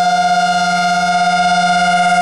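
Synthesizer holding one sustained buzzy note with many overtones and no drums, a steady electronic drone as a synthpunk song winds down.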